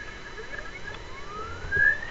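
A faint rising electronic tone climbs steadily in pitch over about a second and grows louder near the end. It comes at the start of the textbook's recorded audio track, just before the narration begins.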